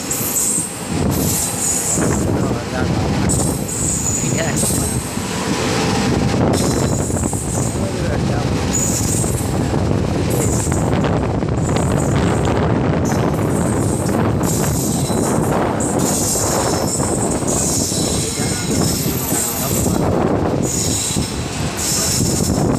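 Train running on rails: a steady loud rumble and rattle of wheels on track, with high-pitched wheel squeal coming and going.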